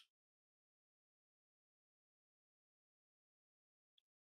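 Near silence: the sound track is essentially muted.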